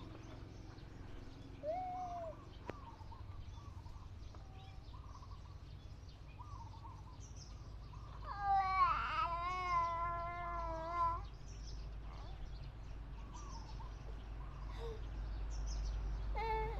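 A long, high, wavering cry lasting about three seconds near the middle, over a faint steady low hum, with a few faint short chirps earlier on.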